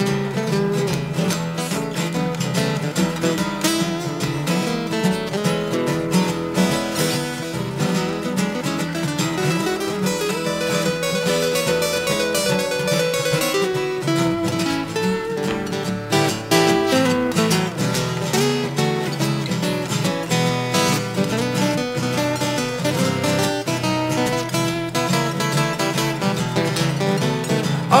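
Two acoustic guitars playing an instrumental break in a blues boogie, with dense plucked notes over a steady rhythm.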